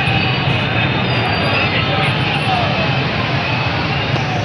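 Small motorcycle engines running as a crowded procession of riders moves slowly along a street, with voices of the crowd mixed into the steady traffic noise.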